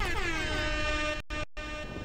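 Station ident sound effect: a buzzy horn-like tone that slides down in pitch, then holds steady, dropping out briefly twice near the end.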